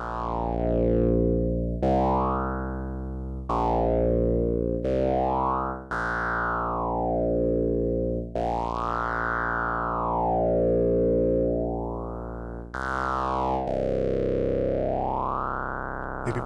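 Moog Mother-32 synthesizer notes, two oscillators mixed, played as a string of held notes and run through a Doepfer A-106-6 XP filter in three-pole all-pass plus one-pole low-pass mode, used as a phase shifter. The sound has a slow phaser sweep that rises and falls about every four to five seconds, and the notes change every second or few.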